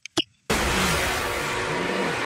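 Steady rushing noise of wind and surf from a TV episode's soundtrack, cutting in abruptly about half a second in after two faint clicks.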